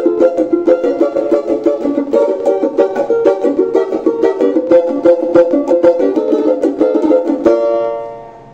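Oliver Brazilian banjo with a 10-inch shell, strummed in a fast, steady chord rhythm and played loud. It ends on a held chord that rings out near the end.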